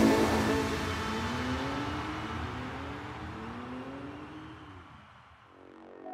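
Car engine accelerating as a sound effect in a trap track's outro, its pitch gliding upward. It fades away steadily to near silence just before the end.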